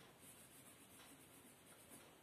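Faint scratching of a coloured pencil shading light blue on paper.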